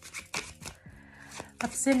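A deck of tarot cards being shuffled by hand: a quick run of soft card taps, about four a second.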